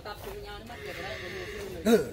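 Quiet background voices, then a man's short loud exclamation, "hoei!", near the end.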